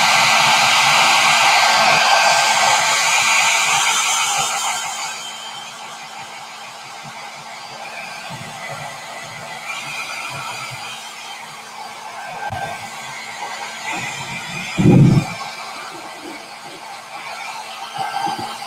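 Handheld hair dryer blowing on wet black paint to dry it: a loud steady rush of air that drops to a lower, quieter rush about five seconds in. A short thump near the end.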